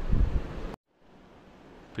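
Low rumbling noise on the microphone that cuts off abruptly at an edit about three-quarters of a second in, followed by faint room hiss.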